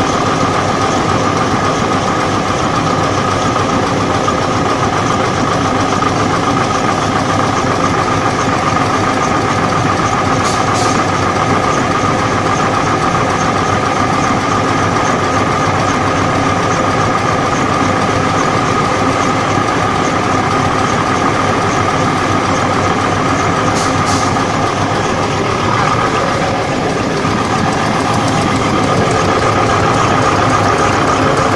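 Automatic tissue-paper log saw machine running steadily and loudly, a constant whine over a mechanical hum, with two brief high hisses about ten seconds in and again near 24 seconds.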